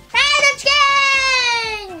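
A child's voice drawing out the word "chicken" in a long sing-song call, its pitch sliding slowly down.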